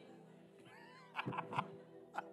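Faint sustained background music held under the room, with a faint high gliding voice about halfway through and a few brief, faint voices from the congregation in the second second.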